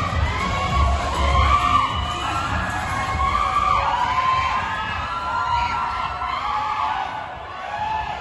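Audience cheering and screaming, with long high whoops rising and falling, over music with a low beat that is strongest in the first couple of seconds.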